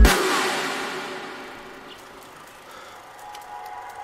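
Electronic dance music breaks down: the bass and beat cut out, and a bright crash-like wash with a falling sweep fades over about two seconds. It leaves a quiet sustained pad with faint ticks.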